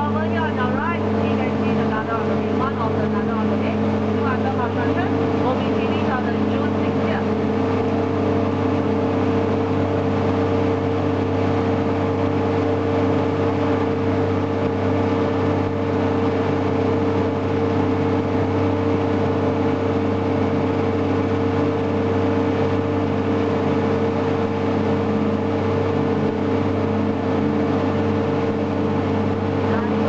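DUKW amphibious vehicle's engine running steadily while the vehicle is afloat, a constant drone with a steady low hum and a higher whining tone held unchanged throughout.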